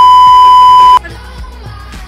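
A loud, steady test-tone beep, the tone that goes with TV colour bars, held for about a second and cut off suddenly. Then pop music with a steady beat comes back, much quieter.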